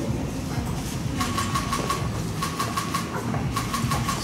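Several short bursts of rapid, evenly spaced clicking, starting about a second in, with a faint steady tone under them, over a low hum of a crowded room.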